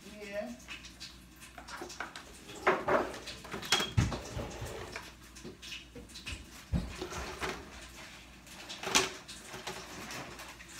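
Snow crab legs being handled and set down in a disposable aluminium foil pan: scattered sharp knocks and crinkles of the thin foil, the loudest about four seconds in and near the end.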